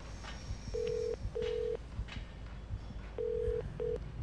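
Telephone ringback tone heard through a phone earpiece: a steady low tone in double pulses, two rings of a short pair each. The second pair is cut off early as the call is answered.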